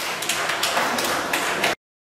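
Background noise of a large hall with several scattered sharp knocks or clicks, cut off suddenly near the end.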